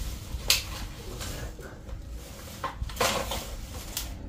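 Hands rummaging in a plastic bag of stored odds and ends: crinkling plastic and a few clinks, a sharp one about half a second in and a longer rustle around three seconds in.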